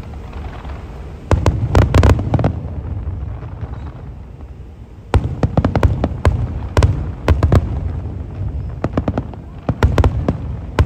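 Aerial fireworks display: a rapid cluster of shell bangs just over a second in, a lull, then another string of bangs from about halfway through.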